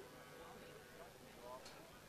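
Near silence, with faint, distant voices talking.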